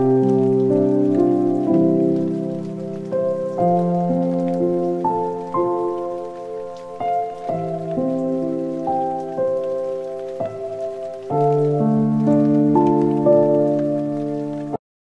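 Background instrumental music of sustained notes in slowly changing chords, with a faint soft patter like rain running under it.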